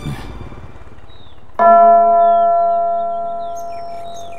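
A church bell struck once about a second and a half in, ringing with several clear tones and slowly fading.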